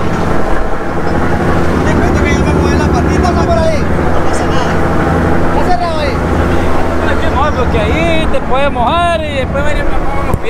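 A ferry's engine running steadily, with people's voices over it, more of them near the end.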